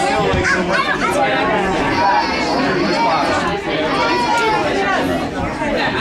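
Several people talking over one another: steady overlapping chatter with no single clear voice.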